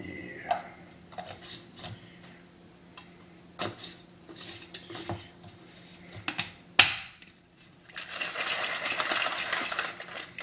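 Plastic shaker bottle and supplement containers being handled: scattered light clicks and knocks, then a sharp snap about seven seconds in, likely the lid closing. From about eight seconds the bottle is shaken continuously to mix the drink.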